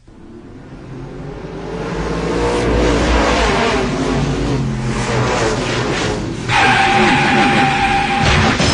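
Race-car sound effect played as a radio call-ender: car engines fade up over about two seconds and run on with gliding pitch. A steady higher tone joins about six and a half seconds in.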